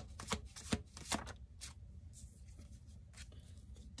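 A deck of oracle cards shuffled in the hands. It gives a quick run of sharp card snaps in the first second and a half, then fainter, sparser card clicks.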